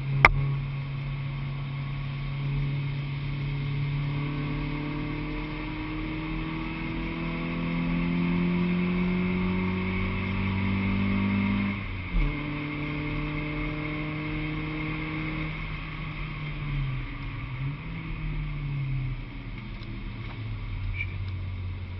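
Honda Civic track car's engine heard from inside the cabin, climbing steadily in pitch as it pulls through a gear, then a thump and a sudden drop in pitch about twelve seconds in as it shifts up. The engine note dips and rises again near the end. A single sharp click comes just after the start.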